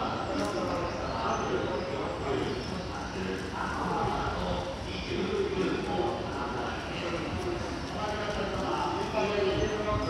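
Echoing speech on a covered railway station platform, with clopping footsteps on the hard platform floor.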